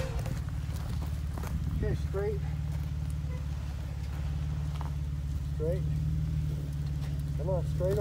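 Jeep Wrangler JK's engine running at a low, steady crawl as it eases over rocks.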